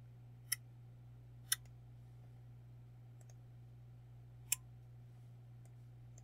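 Computer mouse clicks: two sharp clicks a second apart, then a third about three seconds later, with a couple of fainter ticks between, over a faint steady low hum.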